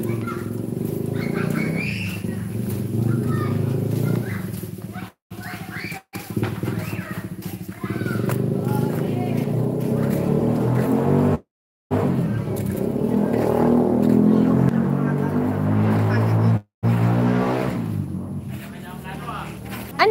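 A motorcycle engine running, with voices talking over it; the sound cuts out completely four times for a moment.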